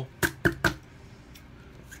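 A plastic drinking straw banged down three times in quick succession, hard enough to dent the straw.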